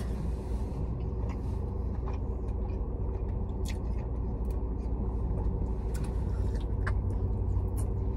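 Steady low hum of a car's idling engine, heard inside the cabin, with a few short clicks and chewing noises from eating.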